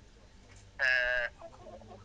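A single short animal call, held at one steady pitch for about half a second, a little before the middle.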